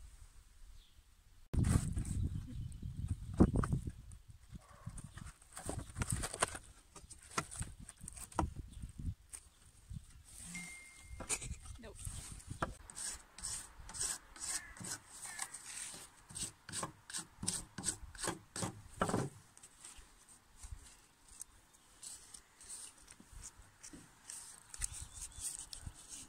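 Some loud low thumps in the first few seconds, then a knife cutting a strip from a sheet of birch bark in short, repeated scraping strokes, about three a second.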